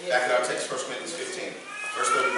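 A man's voice preaching in a strained, breaking way, rising to a high, wavering pitch near the end like a sob: he is speaking through tears.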